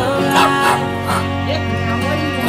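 A small dog barking in short, high yaps, about four times, over background music with long held notes.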